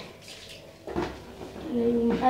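Plastic washing basin being handled, with a single knock about a second in, then a child's voice starting near the end.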